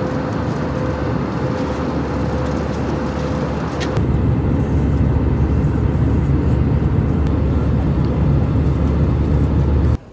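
Airliner cabin noise in flight: a steady low roar of engines and rushing air, with a faint steady hum in the first few seconds. It steps louder and deeper about four seconds in.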